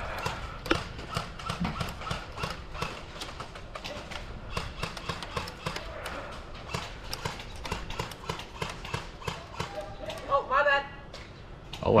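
Airsoft gunfire: an irregular patter of sharp clicks and snaps, several a second, from airsoft rifles and BBs striking plywood barricades. A man's voice breaks in briefly near the end.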